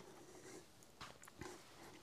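Near silence: room tone, with a couple of faint, brief ticks around the middle.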